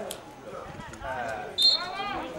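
A short, high referee's whistle blast near the end, over spectators' voices calling out.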